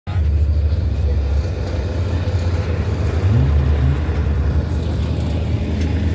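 A small hatchback car's engine running under load as it ploughs through a mud pit, its wheels throwing mud; about halfway through the engine briefly revs up, rising in pitch.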